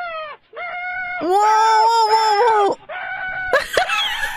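A man's high-pitched wailing cries. A few short wails come first, then one long held wail of about a second and a half in the middle, then more broken cries near the end.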